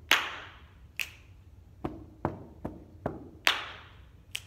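Body percussion without words: a hand clap, a finger snap about a second later, then four evenly spaced foot stomps in sneakers on a carpeted floor, and another loud clap near the end. The claps are the loudest hits.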